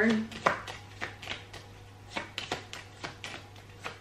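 A deck of tarot cards being shuffled in the hands: an irregular run of light clicks and snaps as the cards slide and tap against each other.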